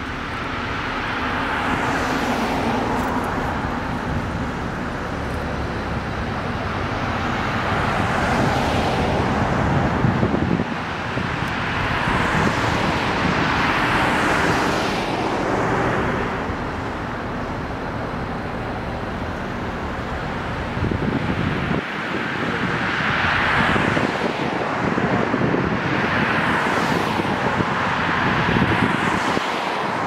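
Cars and SUVs passing one after another on a paved street, the tyre and engine noise of each swelling as it nears and fading as it goes by, several passes in a row.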